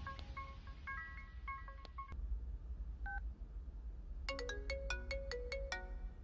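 Mobile phone ringtone: short electronic beeping notes in a stepping melody, a run in the first two seconds and a quicker run of about eight notes near the end, over a low steady hum.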